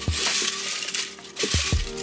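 Slips of cut paper rustling as a hand stirs them in a pot, loudest through the first second, over background music.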